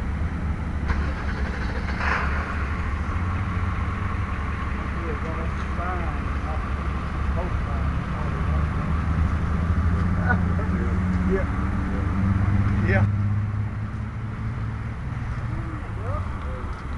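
A vehicle engine idling steadily, heard as a low even hum, with faint voices talking in the background.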